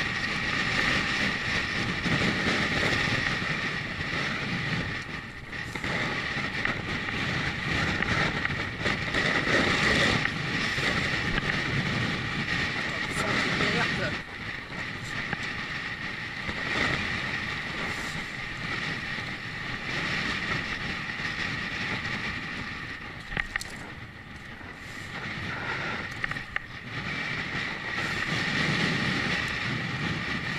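Wind rushing over an action camera's microphone as a bicycle rolls downhill, with a steady hum and rumble from the riding running throughout.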